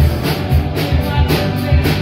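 Live rock band playing: electric guitars and bass guitar over a drum kit keeping a steady beat.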